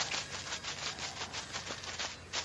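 Footsteps sound effect: quick, light scuffing steps, about seven a second.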